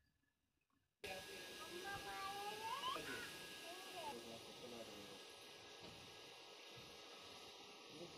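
Near silence, then a steady hiss of background noise that starts suddenly about a second in. Over the next few seconds a faint voice comes and goes, with gliding pitch.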